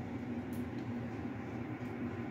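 A steady low mechanical hum with a faint hiss, holding level throughout.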